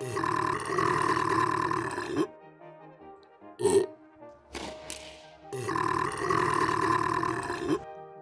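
A person's loud, drawn-out guttural vocal sound, lasting about two seconds, heard twice: once at the start and again about five and a half seconds in. Between the two come a short sharp sound and a quick whoosh, all over quiet background music.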